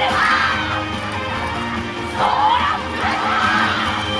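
A group of voices shouting calls together over loud yosakoi dance music, in a few drawn-out shouts: one at the start and more from about halfway through.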